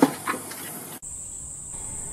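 Steady high-pitched chirring of insects in the background, briefly cutting out about a second in, with faint handling noise beneath it.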